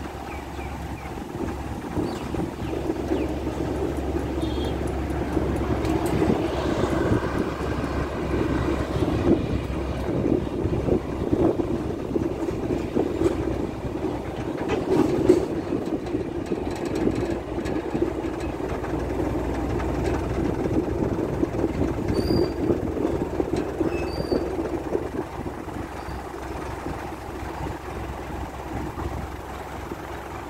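Steady road noise and body rattle of a vehicle driving along a paved road, heard from on board.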